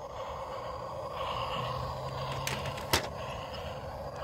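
Battery-powered toy train running around its plastic track, a steady whirring, with a single sharp click about three seconds in.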